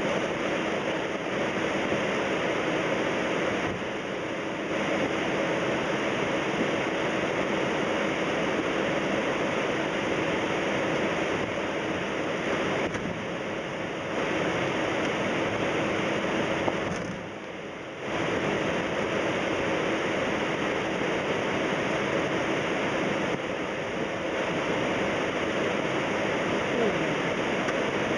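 Steady cabin noise inside a Boeing 767 airliner taxiing: a constant rush of engine and airflow noise with a steady low hum under it. The noise dips briefly a few times, most clearly for about a second around 17 seconds in.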